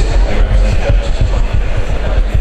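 Loud low rumble with irregular dull thumps, starting abruptly just before and running on steadily.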